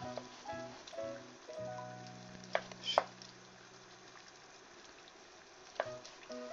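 A kitchen knife slicing fried fish cake (satsuma-age) on a plastic cutting board, with three sharp taps of the blade on the board, two close together in the middle and one near the end. A pot of water bubbles at the boil throughout, under light background music.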